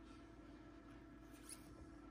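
Near silence: a low steady hum of room tone, with one faint brief rustle of a card in a plastic top-loader being handled about one and a half seconds in.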